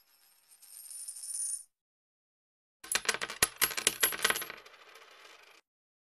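A coin dropped onto concrete: a quick run of bright metallic clinks as it bounces and rings, starting about three seconds in, then a quieter fading rattle as it settles.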